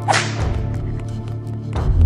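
A sharp whip-like swish sound effect just after the start, over quieter background music. Near the end a rising swell leads into a hit.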